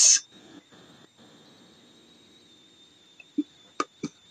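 A man's voice cuts off right at the start. Then the recording's faint background hiss carries a steady high-pitched whine, with two short pops near the end.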